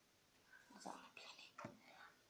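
A person whispering faintly, in short scattered sounds.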